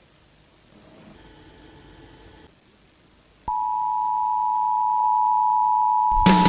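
A single steady electronic tone, a broadcast interruption tone, starts suddenly about three and a half seconds in and holds unchanged; before it there is only faint low sound.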